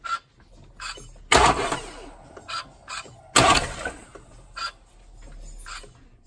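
Audi 2.0 TDI engine being turned over slowly by hand with the rocker cover off: two loud strokes about two seconds apart, each sharp at the start and fading over half a second, with lighter clicks in between.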